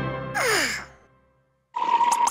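A cartoon larva character's short startled vocal cry, falling in pitch, as the background music fades out. After about a second of silence, a new cue starts near the end with a steady high tone and quick ticks.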